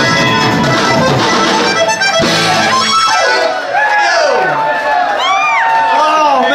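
A live Tex-Mex band with accordion, electric guitars and drums plays the final bars of a song and stops about two to three seconds in. The audience then whoops and cheers.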